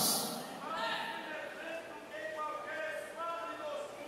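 A man's loud voice echoing away in a large hall, then faint voices speaking with a rising and falling pitch, quieter than the preaching.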